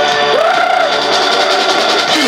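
Live rock band playing with electric guitars, bass and drums. About a third of a second in, a lead line slides up in pitch and then holds over the band.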